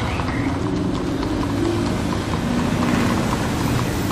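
City street traffic with a bus passing close by, its engine rumbling, while a line of ridden horses clops across the road.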